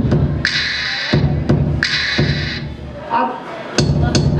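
Loud live electronic music: a looped beat of deep low thumps and hissing noise hits. It thins out about three seconds in, with a short pitched vocal-like sound, then the beat comes back just before the end.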